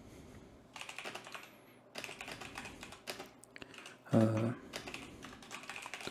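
Typing on a computer keyboard: several short runs of keystrokes with pauses between them.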